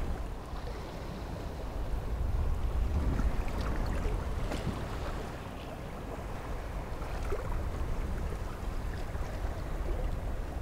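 Wind rumbling on the microphone over the rush of the sea, swelling and easing, with a few faint ticks.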